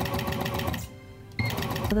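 Serger (overlock machine) running at speed with a rapid, even stitching rhythm as it seams fabric, stopping abruptly about a second in.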